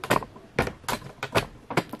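A dog barking outdoors, heard from inside: a string of about five short barks.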